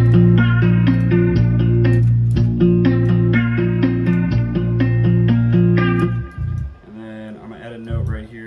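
Playback of a plucked guitar loop with a deep sustained bass from a bass one-shot sample following the chords, the bass note changing pitch a few times. It stops about six seconds in.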